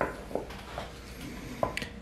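Wooden spoon stirring a wet, still watery bread dough in a ceramic bowl: faint scraping with a few soft knocks.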